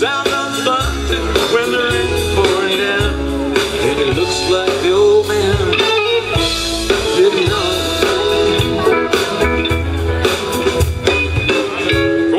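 Live rock band playing an instrumental passage: a lead guitar line with bending notes over bass and drums.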